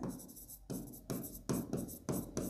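Stylus writing on an interactive smart-board screen: a few short, faint strokes of handwriting.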